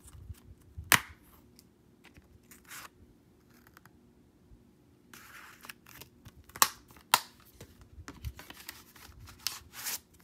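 Plastic Blu-ray case being handled: a few sharp snapping clicks as the case is opened and shut, the loudest about a second in and twice around seven seconds, with rubbing and sliding of plastic and cardboard between them.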